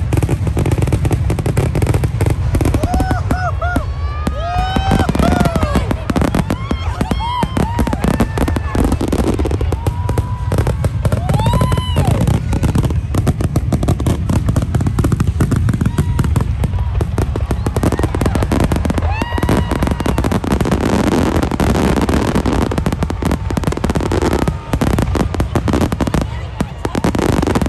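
Fireworks going off in a dense, continuous barrage of crackling pops over a deep rumble, with people's voices calling out over it.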